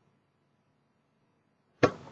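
Near silence, then a single sharp knock near the end: a basketball striking a hard surface.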